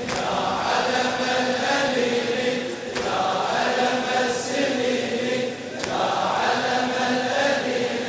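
A congregation of mourners chanting a latmiya lament refrain together. The long held phrases break off and start again about every three seconds.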